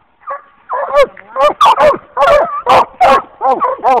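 Three Walker coonhounds barking treed at a raccoon: a short bark, then from about a second in a fast run of loud, overlapping barks, about four a second.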